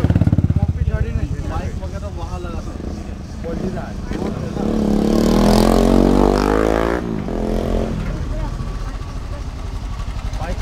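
Royal Enfield single-cylinder motorcycles idling close by with a regular thud, under people talking. A vehicle passing on the road grows louder between about four and a half and seven seconds in, then drops away suddenly.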